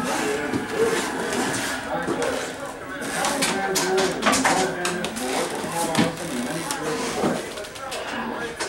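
Indistinct voices talking, too unclear for the words to be made out.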